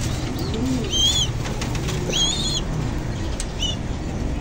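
Racing pigeons cooing, with a flutter of wings and two short high chirps about one and two seconds in, over a steady low rumble.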